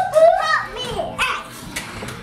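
Young children's voices in play, high-pitched wordless calls loudest in the first half second, with a few light knocks.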